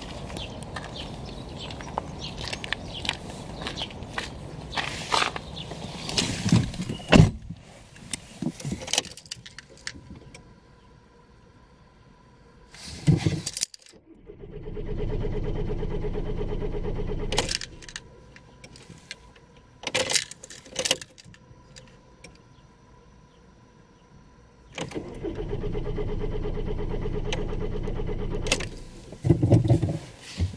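VW Golf Pumpe-Düse diesel cranking on its starter motor without catching, twice, each try about three seconds long, with sharp clicks of the ignition key between. With the PD injector loom connector unplugged the injectors get no signal, so the engine will not fire. Keys jangle and things are handled in the first few seconds.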